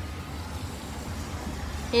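Steady low rumble of a moving car heard from inside the cabin: engine and road noise while driving.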